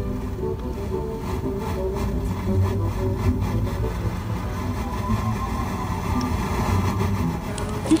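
Car radio playing music, heard inside a car's cabin over the car's steady low rumble.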